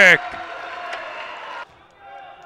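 The tail of a male sports commentator's call, then a faint steady hubbub of a volleyball gym after a point, with players' voices. The hubbub cuts off suddenly near the end at an edit.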